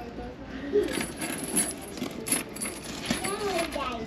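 Light metallic clinks and rattles of handbag hardware, gold chain straps and buckles, as bags are moved about on a display table. Faint voices sound in the background.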